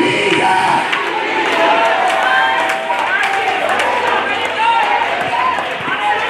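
Church congregation's many voices shouting and praising together, with one man's voice on the microphone among them. The voices fill a reverberant hall.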